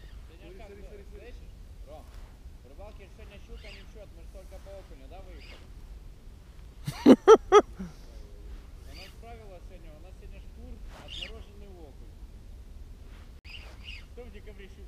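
Faint talking of people some way off, broken about seven seconds in by three short, loud vocal bursts in quick succession.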